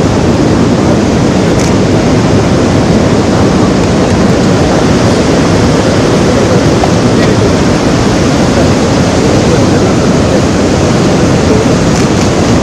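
Loud, steady rushing of a large volume of muddy river water flowing through and below a dam spillway, an even noise with no break.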